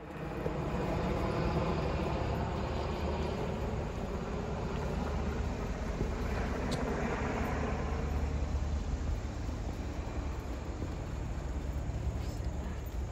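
Steady outdoor background noise: a low rumble with a soft hiss above it and no distinct events.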